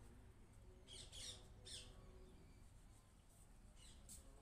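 Near silence, with a few faint, short bird chirps between one and two seconds in.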